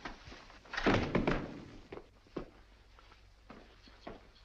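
A man collapsing heavily onto a wooden floor: a cluster of loud thuds about a second in, then a few lighter knocks.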